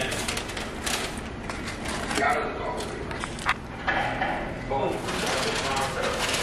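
Indistinct, low voices, with a couple of sharp clicks or knocks about one second in and again past the middle.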